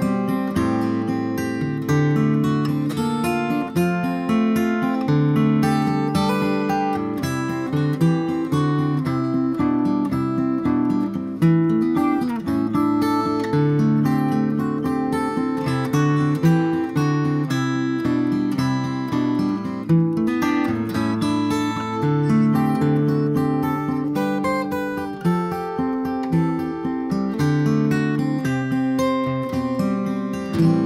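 A 1964 Gibson J-50 acoustic guitar played with a capo, picked and strummed, in a continuous passage. It is fitted with a Mitchel's PlateMate bridge plate and bone bridge pins in place of the original plastic ones.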